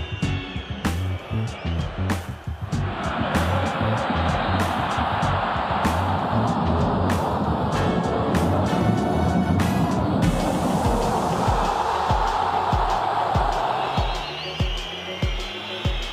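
Background music with a steady beat, with a loud, even rush of football stadium crowd noise under it from a couple of seconds in until near the end.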